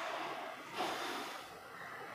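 A man's short, audible breath through the nose, a sniff or snort, about a second in, over faint room tone.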